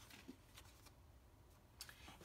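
Near silence: room tone with faint handling of paper on a tabletop and a soft click near the end.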